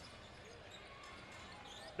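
Faint on-court sound of a basketball game: a ball bouncing on the hardwood floor over a low, steady arena background.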